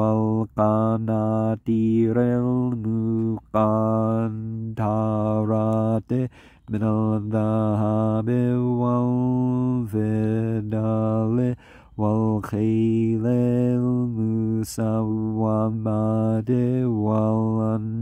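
A man reciting the Quran in Arabic in a chanting voice, holding long, low, steady notes with short breaths between phrases.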